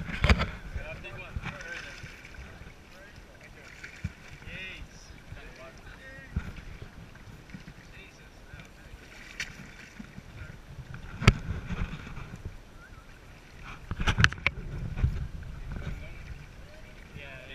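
Water slapping and splashing against the side of a small boat, where a crowd of nurse sharks churns at the surface. Wind is on the microphone, voices murmur in the background, and a few sharp knocks sound out: one just after the start, the loudest about eleven seconds in, and a cluster near the end.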